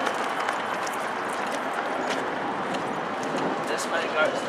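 Running footsteps on pavement and stone steps, faint and irregular, under a steady rush of outdoor noise from the moving handheld camera.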